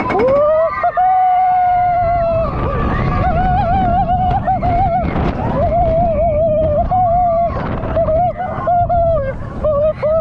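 A rider screaming on a suspended roller coaster. The scream rises and is held, then breaks into several long, wavering screams with short breaths between, over the rush of wind and the rumble of the train.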